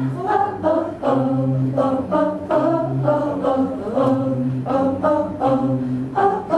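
Several voices singing unaccompanied in harmony, short repeated sung phrases over a held low note.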